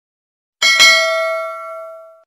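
A bell ding sound effect for a subscribe-bell click: two quick strikes just after half a second in, then a clear ringing tone fading away over about a second and a half.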